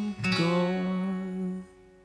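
The song's final chord on acoustic guitar, strummed once about a third of a second in and left to ring, then dying away near the end as the song finishes.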